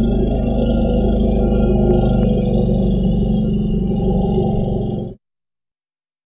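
Low elephant growl sound effect: one long, steady, low growl that stops abruptly about five seconds in.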